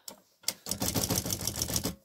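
Olympia SM9 all-metal manual typewriter clicking in a quick, dense run of mechanical clicks, starting about half a second in.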